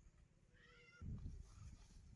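A single short animal call about half a second in, lasting about half a second, faint against the background. It is followed from about a second in by a louder low rumble.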